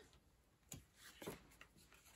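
Near silence, with a few faint, soft rustles of baseball cards being slid off a hand-held stack one at a time, about two-thirds of a second and a second and a quarter in.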